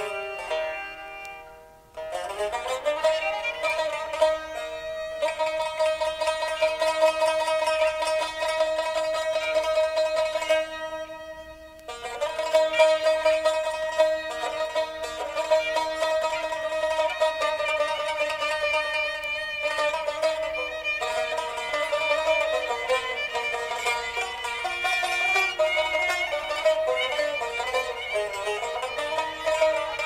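Instrumental passage of an Azerbaijani Segah mugham on bowed and plucked string instruments, with long held bowed notes. The music drops away briefly about two seconds in and again near twelve seconds.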